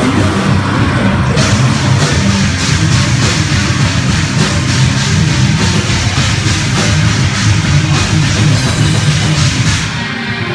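Live heavy metal band playing loud: electric guitars, bass guitar and a drum kit, with fast, steady drumming.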